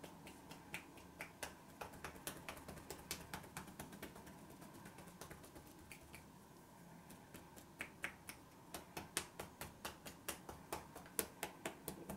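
Percussion-style head massage: fingertips tapping quickly and lightly on a person's head, giving a faint, uneven run of sharp clicks a few times a second that thins out for a couple of seconds in the middle.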